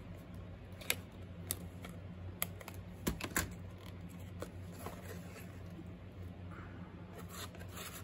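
Scissors snipping through a small card: a few short, sharp clicks in the first few seconds, then light rustling as the card and paper are handled, over a steady low hum.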